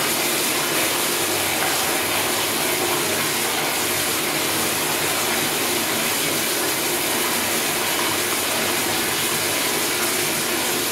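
Sensor-operated flushometer toilet running on and on, water rushing steadily into the bowl: the flush valve is not shutting off.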